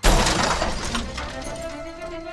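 Cartoon crash sound effect of cardboard boxes tumbling off a delivery truck: a sudden loud clatter at the start that fades away over about a second.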